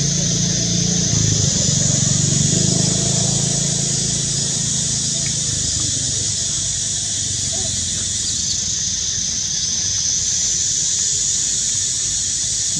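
Steady outdoor ambience: a constant high insect drone over a low, steady rumble of vehicle engines, with faint voices in the first few seconds.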